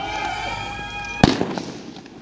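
A held, yelled shout, then one sharp, loud bang about a second and a quarter in, in a street clash.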